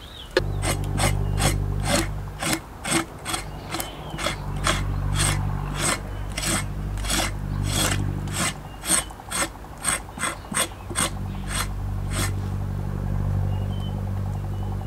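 A broad knife blade scraping a wet cow hide on a wooden board in short repeated strokes, about two a second, stopping about twelve seconds in.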